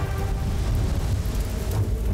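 Dramatic background score: a deep, steady rumbling drone under an even rushing, hissing noise, with faint held tones above.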